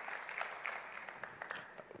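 Scattered audience applause, a spread of light hand claps that thins out and fades away.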